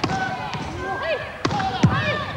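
Volleyballs hit hard in a training drill, smacking off hands and the wooden gym floor: three sharp smacks, the last two close together near the end, amid voices and squeaks in a large gym.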